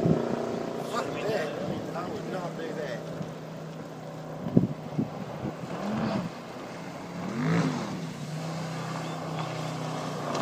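A motor running steadily at a low pitch under voices calling out, with a sharp knock about four and a half seconds in.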